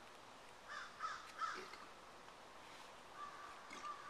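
A bird giving three harsh calls in quick succession about a second in, then a faint, thin steady tone from about three seconds in.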